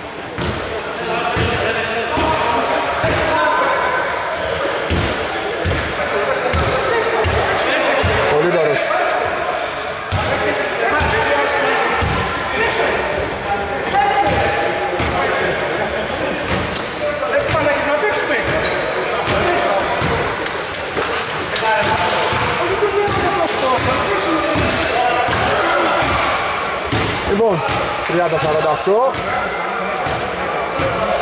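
Basketball being dribbled on a wooden indoor court, a run of repeated thuds, with voices carrying through a large, echoing hall.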